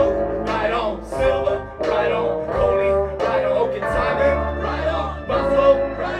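Live electro-pop band music: electric guitar and keyboard over a heavy bass line, with a voice singing over it.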